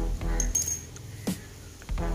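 A light metallic clink with a brief high ring about half a second in, from a steel ring spanner on the motorcycle's rear brake bolts, over background music with a steady beat.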